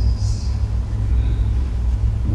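Steady low rumble of background room noise, with a brief soft hiss in the first half second.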